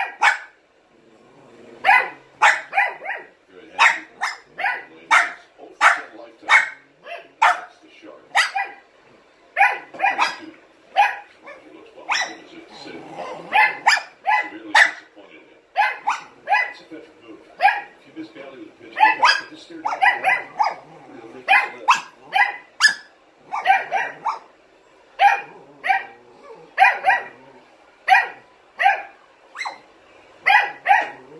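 Rough collie puppy barking over and over in short, high-pitched barks, often two or three close together, with only brief pauses between them.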